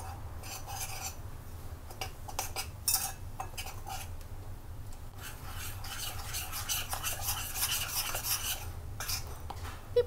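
Metal spoon stirring flour batter in a ceramic bowl: scattered scrapes and clinks against the bowl at first, then quicker, steady stirring strokes from about five seconds in as the batter turns smooth.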